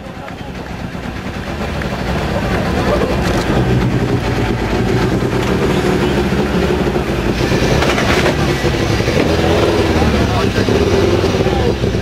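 Peugeot 207 Super 2000 rally car's two-litre four-cylinder engine running, growing louder over the first few seconds and then holding, with voices over it.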